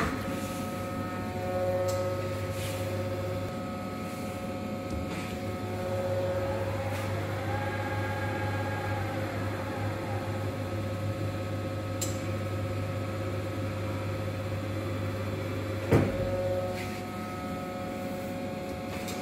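Reishauer RZ 362A gear grinding machine running with a steady low hum and a constant tone. About six seconds in, a drive spins up with a rising whine, holds, and winds down again by about ten seconds; a single sharp knock comes near the end.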